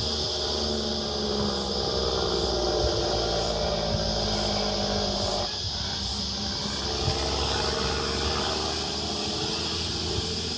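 A steady high chorus of insects trilling, with a low steady drone of held pitch underneath. The drone drops out about halfway through and comes back a couple of seconds later.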